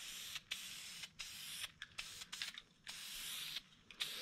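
Aerosol can of Dupli-Color vinyl and fabric spray paint hissing faintly in a series of short bursts, about two a second, as paint is lightly fogged on.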